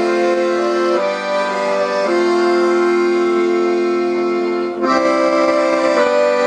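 Accordion playing sustained chords, changing chord about a second and two seconds in, with a brief break in the sound near the end before the chords resume.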